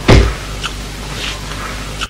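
A low thump just after the start, followed by a steady, even background noise.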